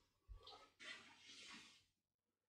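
Near silence, with a few faint soft knocks from a plastic food processor bowl and lid being handled.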